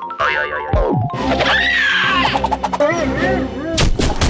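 Cartoon slapstick sound effects over lively music: a falling swoop about a second in, a run of springy boings later, and a sharp crash near the end.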